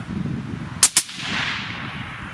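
Two suppressed .260 Remington Tikka T3X rifles with Jaki suppressors fired almost together: two sharp reports less than a fifth of a second apart about a second in, followed by an echo that fades away.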